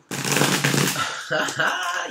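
A man laughing, a breathy, noisy laugh for about a second, then his speech resuming.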